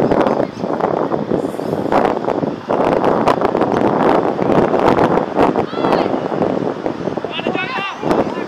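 Loud, overlapping shouting and calling from spectators and players on a sports field, too jumbled to make out words, with higher, excited calls near the end.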